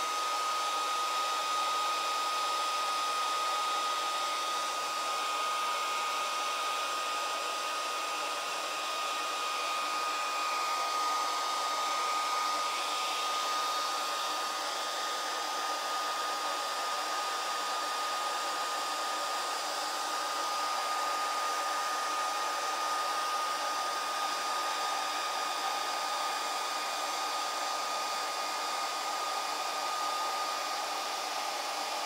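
Handheld hair dryer running steadily, a constant rush of air with a steady thin whine, blown over a leather seam to dry the contact cement.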